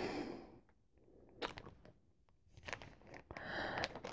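Sock ruler's card packaging being handled, mostly quiet, with a few faint ticks and a short crinkling rustle near the end.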